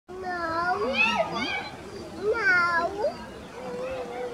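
High-pitched young children's voices calling and chattering, in two bursts: one in the first second and a half and another around the middle.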